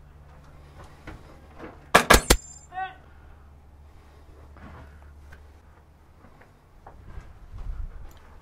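Airsoft rifle firing three shots in quick succession about two seconds in, each a sharp loud crack with a brief ringing tail.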